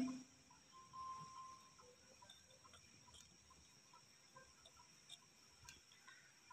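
Near silence: room tone, with a brief faint tone about a second in and a few faint ticks.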